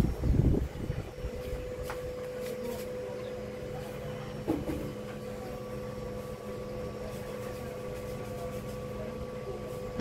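A steady low hum with a faint held tone, after a brief rumble of handling noise in the first second, and one knock about four and a half seconds in.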